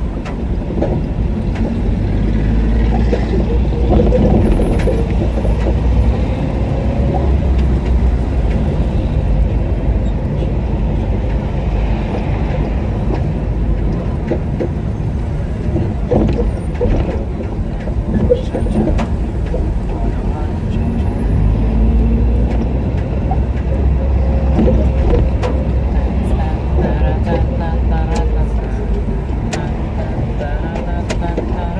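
A car driving slowly through city streets: steady engine and road rumble that swells twice, with indistinct voices in the background.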